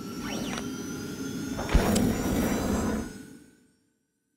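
Logo sting sound effect: a swelling noise that builds for about a second and a half, a sharp hit a little under two seconds in, then a sustained ringing tail that fades away about three and a half seconds in.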